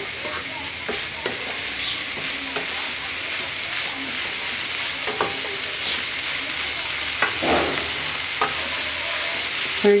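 Mixed vegetables frying in oil in a pan, with a steady sizzling hiss, while a spatula stirs and scrapes through them, giving scattered clicks against the pan.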